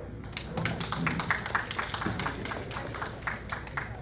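Audience applauding, with many distinct individual claps, starting just after the start and thinning out near the end.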